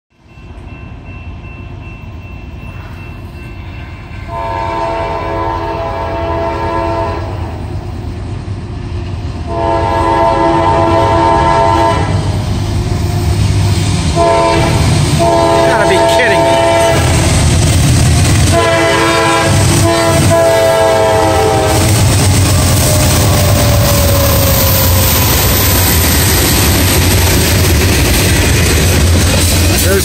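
Diesel freight locomotive's multi-chime air horn, on an ex-CSX GE unit, sounding four blasts for the grade crossing as the train approaches; the last blast is the longest. The rumble of the locomotives' engines and wheels grows under the horn, then stays loud as the locomotives and hopper cars roll past.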